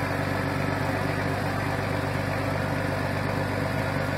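A vehicle engine idling steadily, with an even low hum and a fine regular pulse.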